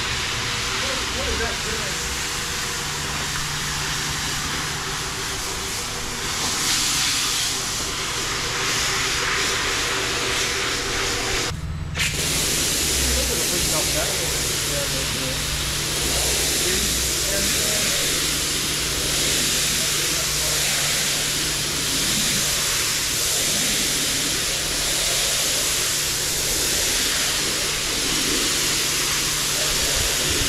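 Single-disc rotary floor machine running steadily as its pad scrubs shampoo foam into a wet wool rug: a steady hum over a constant wash of noise. The sound breaks off for an instant about twelve seconds in and resumes with a slightly different hum.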